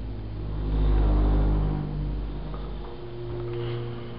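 Telescoping holeless hydraulic elevator starting up: the pump motor hums steadily while a loud low rumble from the car swells about a second in and then fades.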